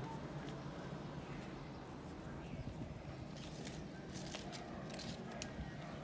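Faint rustling and crinkling of paper as a small square is rolled by hand into a cone, with a few soft crackles in the second half over a low steady background hum.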